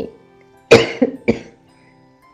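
A person coughing, three quick coughs close together about a second in, over faint background music.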